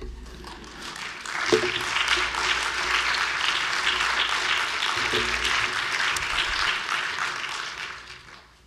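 Audience applauding: the clapping builds over the first couple of seconds, holds steady, and dies away near the end.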